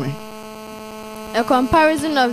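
Steady electrical mains hum with several fixed tones; a voice comes back in over it about one and a half seconds in.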